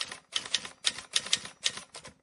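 Typewriter-style typing sound effect: a quick, uneven run of sharp key clacks, about six a second, with short pauses between runs.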